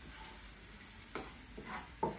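Food sizzling faintly in a non-stick frying pan as it is stirred with a plastic spatula, with two brief clicks, one about a second in and one near the end.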